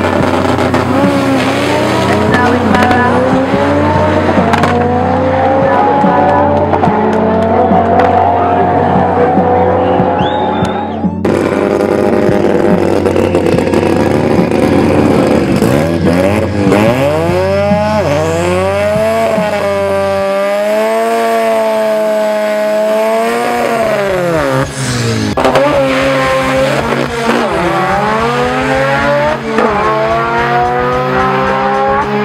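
Drag-racing car engines revving hard, with tyre squeal. One engine climbs steadily in pitch for several seconds and is cut off abruptly, then another revs up, holds, drops away and revs up again near the end.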